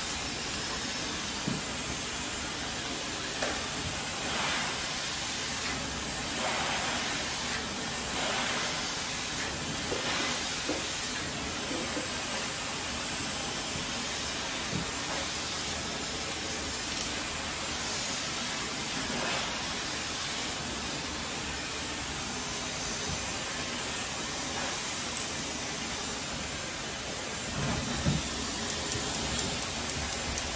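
Handheld hair dryer blowing a steady hiss of air while hair is dried straight with a round brush, swelling a little now and then as the dryer is moved.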